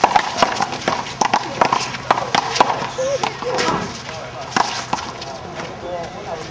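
A handball rally: a rubber ball slapped by hand, smacking off a concrete wall and bouncing on the court. It makes a quick series of sharp slaps that thins out after about three seconds as the point ends.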